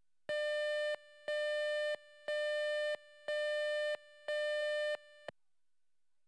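Countdown-leader beeps: five identical tones, each about two-thirds of a second long, one a second, at a mid pitch with a buzzy edge. A short click follows the last one.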